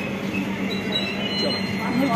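Indian Railways LHB passenger coaches rolling slowly past: a steady rumble of wheels on rail with a low hum underneath, and a thin high wheel squeal through the middle.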